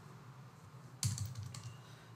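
Computer keyboard keystrokes, a sharp key click about a second in, as typed text is deleted.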